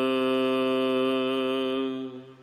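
A man's voice chanting a line of Gurbani from the Hukamnama in one long, steady held note that dies away near the end.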